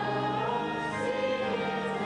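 A group of voices singing together in sustained chords, the notes changing every half second or so.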